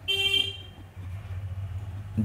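A single short toot of a vehicle horn, about half a second long at a steady pitch, followed by a low steady hum.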